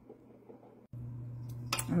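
A metal spoon clinking and scraping in a pot of cooked pinto beans, over a steady low hum. The clinks begin about a second and a half in, after a faint, near-quiet stretch.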